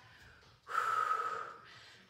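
One audible breath out from a woman, starting a little past half a second in and fading away within about a second.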